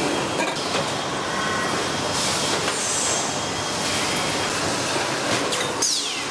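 Steady factory machinery noise, a dense clatter and hiss with a few short high metallic squeals, as industrial robot arms and presses work stainless steel cup tubes. A falling squeal comes near the end.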